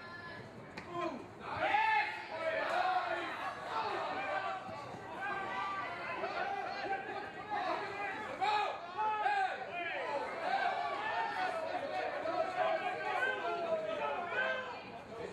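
Several voices calling and talking over one another at a rugby match, loudest from about two seconds in, as a tackle and ruck form.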